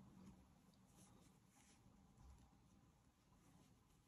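Near silence: room tone with a few faint soft rustles of a Tunisian crochet hook drawing loops through thick velour yarn.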